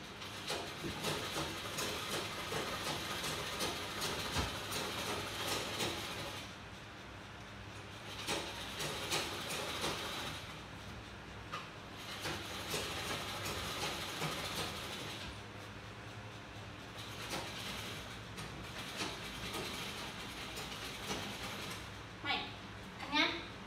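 Sewing machine running in bursts of a few seconds with short pauses between, a rapid clattering stitch.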